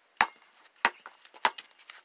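Basketball bouncing on concrete as it is dribbled: three sharp bounces, evenly spaced about two-thirds of a second apart.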